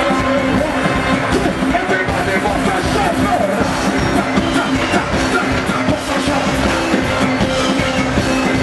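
A live soca band playing loud, continuous music.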